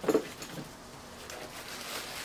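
Soft rustling and handling of a cardboard gift box as its lid is lifted off and the contents inside are reached into.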